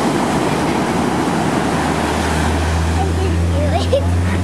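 Ocean surf washing onto a sandy beach, with wind on the microphone; a low steady hum comes in about halfway through.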